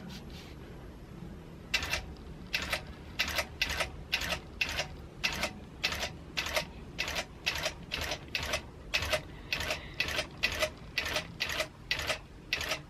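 Gammill longarm quilting machine sewing long basting stitches, each needle stroke a sharp click, a little over two a second, starting about two seconds in.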